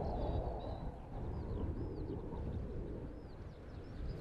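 Outdoor field ambience: a steady low wind rumble with faint birdsong, a string of short whistled notes that rise and fall.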